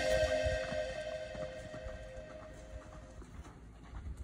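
Background music fading out over the first three seconds. Under it, faint hoofbeats of a horse cantering on arena dirt.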